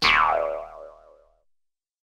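Cartoon "boing" sound effect: a wobbling tone that slides down in pitch and dies away within about a second and a half.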